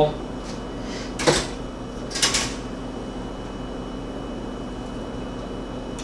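Handled slices of dry toast giving two short scraping rustles, one about a second in and a longer one about two seconds in, over a steady background hum.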